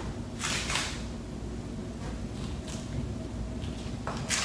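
Soft rustling from a person moving and handling fabric, over a low steady room hum; the clearest rustle comes about half a second in, with fainter ones later.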